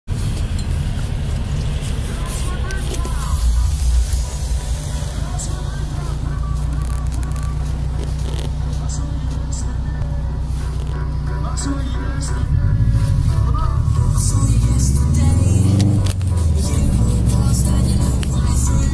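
Music with vocals playing on a car stereo inside the cabin of a moving Subaru Impreza, over the car's low running engine and road noise; it gets louder about two-thirds of the way through.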